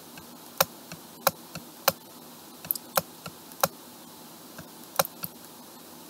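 Light, sharp clicks and taps at uneven intervals, about a dozen in six seconds, from a computer input device while letters are written by hand on screen, over a faint steady hiss.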